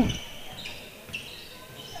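Faint basketball dribbling on a hardwood gym floor, with a couple of short high squeaks.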